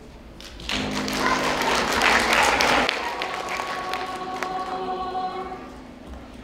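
Mixed high school choir singing with piano. A loud, full passage comes in about a second in and lasts about two seconds, then the choir settles into softer held chords.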